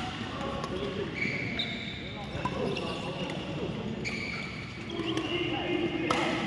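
Badminton rally: court shoes squeaking on the hall floor over and over as the players move, with a sharp racket strike on the shuttlecock about four seconds in.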